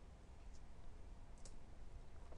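Two faint computer mouse clicks about a second apart over quiet room tone, advancing the slide to reveal the next line.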